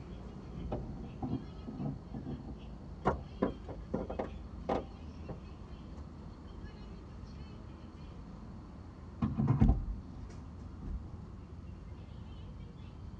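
Scattered knocks and clicks from a car being refuelled, heard from inside the cabin over a low steady rumble, with one heavier thump about nine and a half seconds in.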